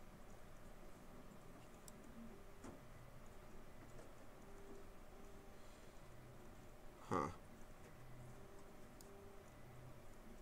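Near silence: quiet room tone with a few faint computer mouse clicks, and one short, louder sound lasting about a third of a second, about seven seconds in.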